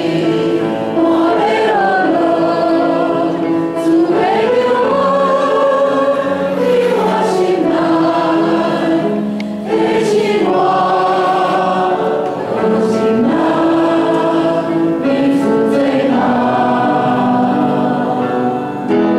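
A small worship team of amplified voices singing a praise hymn in Taiwanese Hokkien together, with piano accompaniment, in long held notes that glide between pitches.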